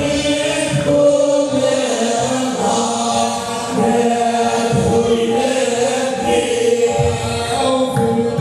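Hamadsha Sufi brotherhood chanting together: a group of voices singing a sustained devotional chant in unison.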